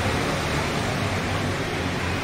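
Steady rain falling on a city street, heard as an even hiss, with a low rumble of traffic underneath.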